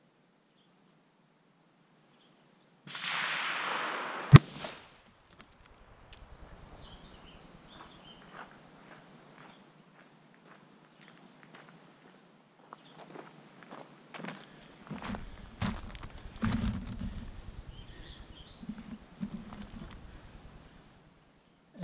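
A single 6.5 Creedmoor rifle shot about four seconds in, heard as one sharp crack as the bullet strikes the ballistics gel blocks, just after a second or so of rushing noise. In the last quarter, footsteps on gravel come up to the blocks.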